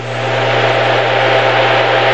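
Steady hiss of radio static from a weather-radio receiver in a gap between announcements, swelling up over the first half second, over a constant low hum.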